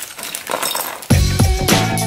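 Small hard plastic toy parts clinking and rattling as a cut-open bag of them is handled and tipped out. About halfway through, background music with a steady beat cuts in and carries on.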